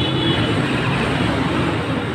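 Steady roadside traffic noise, a continuous low rumble.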